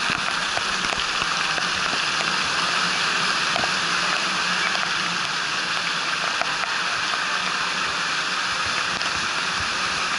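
Water pouring and splashing steadily from the spouts and sprays of a children's water-park play structure, falling close around the camera.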